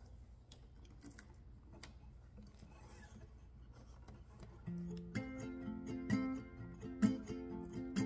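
Faint handling clicks and rustle as an acoustic guitar is picked up, then about five seconds in the guitar starts the song's intro, its chords ringing and held.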